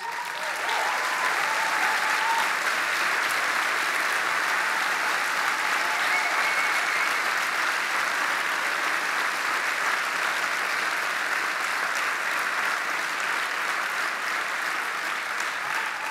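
A large audience applauding, the clapping sustained at an even level without a break.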